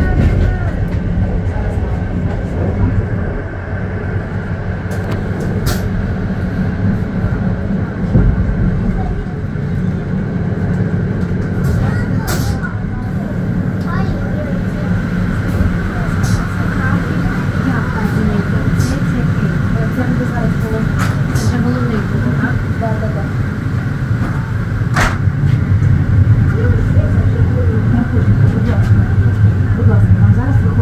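Electric train running along the track, heard from the front of the train: a steady low rumble with occasional sharp clicks, growing louder near the end.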